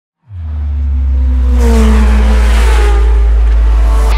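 Channel logo intro sound effect: a deep bass rumble swells in about a quarter second in, with a whoosh and falling tones about a second and a half in, running on into the intro music.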